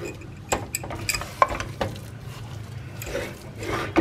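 Wooden spatula stirring black rice and jaggery in an aluminium pressure-cooker pot, scraping through the grains with scattered sharp knocks against the pot's side.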